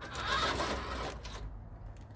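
Toy RC car's small electric motor and gearbox whirring as the car drives a short way over paving stones, loudest in the first second and then fading.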